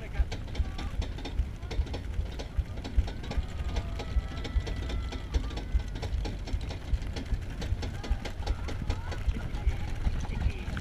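Roller coaster car being hauled up the lift hill, with a steady rattling clatter of clicks and knocks from the lift mechanism and track over a low rumble.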